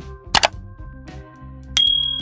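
Sound effects of a subscribe-button animation over soft background music: a quick double click about a third of a second in, then a bright bell ding near the end that rings on and fades slowly.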